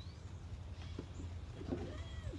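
A short animal call, loudest about a second and a half in, over a steady low rumble, with faint high bird chirps.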